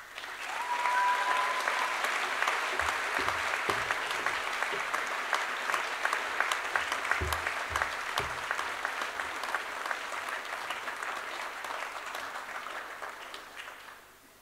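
Audience applauding: dense clapping that builds up within the first second, holds steady, then slowly dies away near the end.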